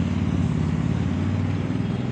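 A steady, low mechanical hum with a hiss over it, unchanging throughout.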